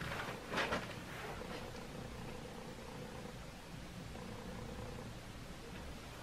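Quiet room noise with a faint steady hum, and a brief rustle of clothing and hair about half a second in as the wearer turns around.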